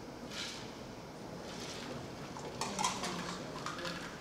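Light clinks and rustles of small objects being handled, in a few short bursts, the clearest about three seconds in.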